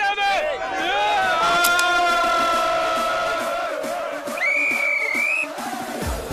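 A group of men chanting a carnival cry in unison, drawn out into one long held shout. About four and a half seconds in comes a single high, wavering whistle blast, about a second long.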